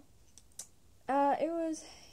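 A few faint clicks, then about a second in a short wordless vocal sound from a girl, her voice bending down and up in pitch for under a second.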